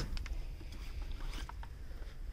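Low steady rumble of a handheld phone microphone being moved, with a few faint ticks of handling.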